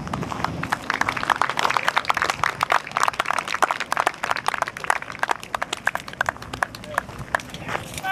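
Crowd applause: many scattered hand claps, thinning out over the last couple of seconds.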